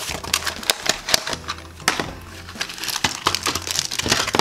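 Plastic blind-pack wrapping crinkling and crackling in quick clicks as it is torn off and a small plastic cup is handled, over faint background music.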